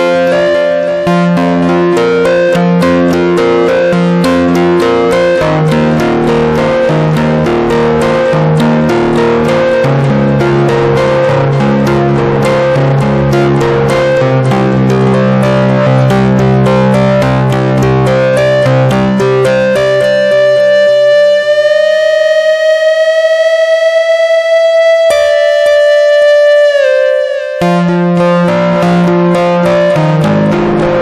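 Yamaha Reface DX four-operator FM synthesizer playing an 80s power-guitar patch through its distortion and delay effects: rapidly repeated chords that change every few seconds. About two-thirds of the way in, a single held lead note slowly bends upward, and then the chords return near the end.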